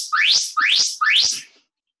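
Electronic interval timer sounding a run of identical rising chirps, about two a second, signalling the start of a work interval.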